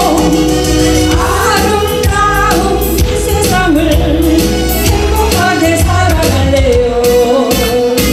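Korean trot song sung by a woman into a microphone, with music and a steady beat.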